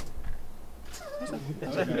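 A click, a quiet second of room hum, then people laughing from about a second in, one voice starting in a high squeal that falls away.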